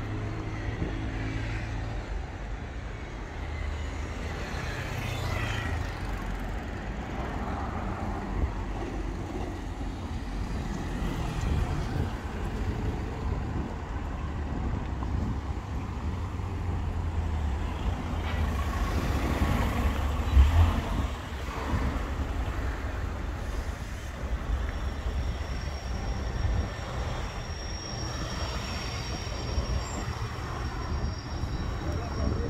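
Road traffic on a busy main road: cars and vans passing close by over a steady rumble of tyre and engine noise, with the loudest pass about two-thirds of the way through.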